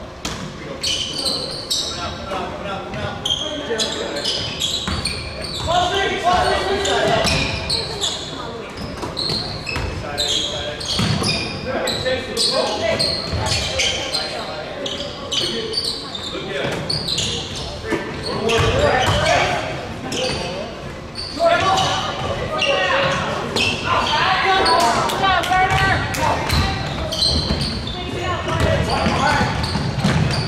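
Basketball game sounds in an echoing gym: a ball bouncing on the hardwood floor amid the voices and calls of players and spectators.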